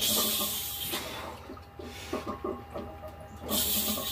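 A weightlifter's forceful breaths through the mouth during heavy barbell bench-press reps: a loud hissing breath in the first second and another near the end.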